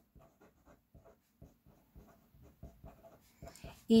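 Fine-tip BIC Intensity marker writing on paper: faint short strokes and taps, a few a second, as a short line of words is written out.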